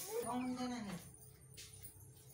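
A single drawn-out vocal sound lasting about a second, its pitch rising and then falling, followed by faint quiet with a low steady hum.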